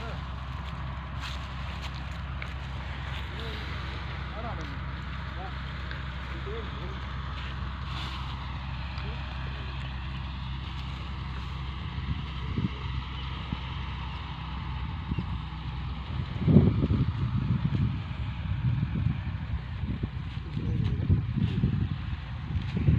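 Massey Ferguson 240 tractor's diesel engine idling steadily. In the last several seconds, louder irregular thumps and rustles come over it.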